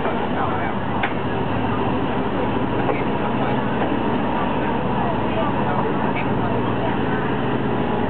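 Ex-JR West 12 series passenger coach running along the track, heard through its half-open window: a loud, steady rolling rumble of wheels on rail mixed with rushing air and a low hum.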